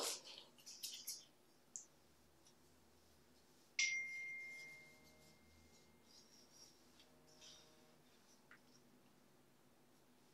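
Quiet clicks and taps of a resin brush being picked up and worked over wet cloth on plastic sheeting, then about four seconds in a single sharp clink that rings on as one clear tone for about two seconds.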